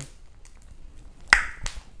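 A short quiet pause with low room tone, broken just past the middle by one sharp mouth click, followed a moment later by a fainter click.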